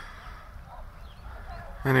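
Outdoor field ambience: a low steady rumble of wind on the microphone, with a few faint distant bird calls in the middle. A man's voice starts near the end.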